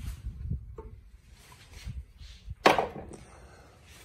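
Handling noise from a plywood frame and a plastic corner clamp being worked by hand, with one sharp wooden knock about two and a half seconds in.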